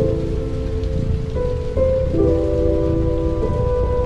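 Lo-fi hip hop music in a sparse passage: soft held chords that change every second or two over a steady rain-like hiss, with no drum beat.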